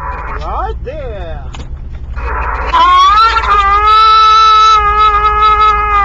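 CB radio speaker carrying an on-air transmission: quick rising and falling chirps, then a long wailing tone that rises, holds steady for about three seconds and starts to fall, like a siren.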